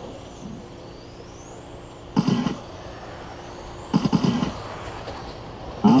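Electric radio-controlled touring cars racing on the track: faint, high whines that rise in pitch as the cars accelerate, over a steady low hum. Two short louder bursts of noise come about two and four seconds in.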